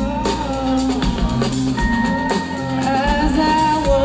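Rock band playing live: a drum kit groove with bass and electric guitars under a sustained melody line, heard as an audience recording.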